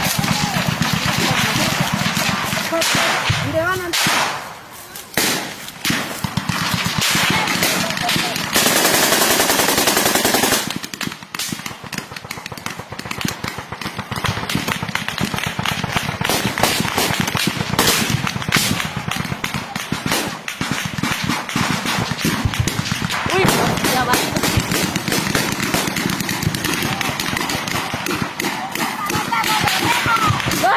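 Gunfire from rifles: many shots throughout, some in quick strings, with men shouting at times. A loud rush of noise lasting about two seconds comes about nine seconds in.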